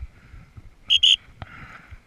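Dog whistle blown in two short, sharp, high-pitched blasts about a second in, signalling a pointer hunting for a downed quail.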